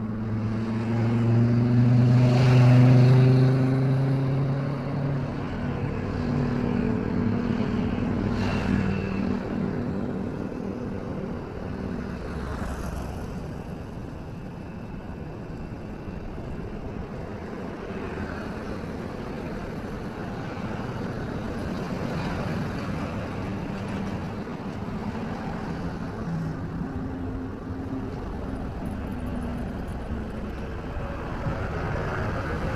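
Road traffic. A motor vehicle's engine passes close and loud, peaking about three seconds in and fading soon after, then steady traffic noise with smaller swells as more vehicles go by.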